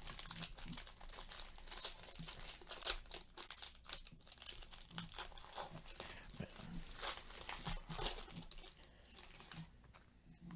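Foil wrapper of a trading-card pack being torn and peeled open by hand, an irregular crinkling crackle that dies away near the end.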